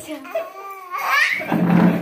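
A baby laughing and squealing, high and rising about a second in, with a deeper adult laugh loudest near the end.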